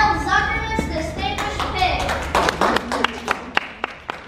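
Scattered hand clapping from a few people, irregular claps starting about a second and a half in and thinning out near the end, after a short stretch of voices.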